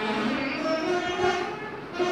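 A group of Saraswati veenas played together in unison, a Carnatic melody of sustained plucked notes that bend in pitch.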